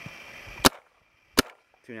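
Empire Axe electronic paintball marker firing two single shots, about three-quarters of a second apart, through a chronograph held on its barrel to measure velocity, which reads about 291 feet per second.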